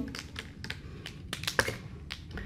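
A run of light clicks and taps from plastic markers being handled as a marker is picked up for writing on a lightboard.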